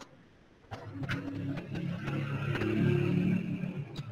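A motor vehicle's engine running, coming in under a second in and growing louder over the next few seconds, with a few light clicks.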